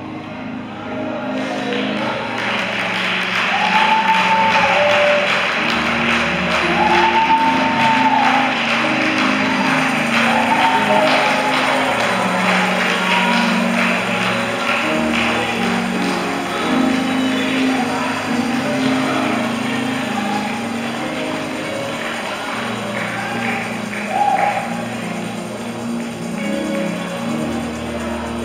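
Live church worship music: keyboard holding sustained chords while the congregation claps and calls out, the clapping swelling in about two seconds in.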